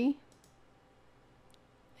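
A few faint, sparse computer mouse clicks.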